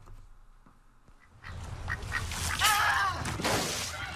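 Duck quacking on a TV commercial's soundtrack, over steady outdoor background noise that comes in about a second and a half in; the quack is the loudest sound.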